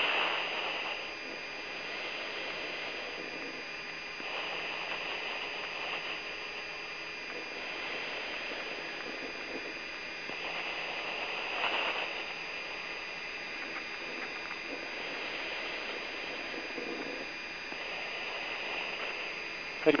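Steady hiss and hum of an open radio intercom channel, with a faint, unchanging high whine and a few slow swells in the hiss.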